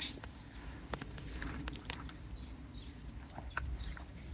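A few faint clicks and scuffs from handling a fishing rod and reel, a small cluster of them near the end, over a low steady rumble.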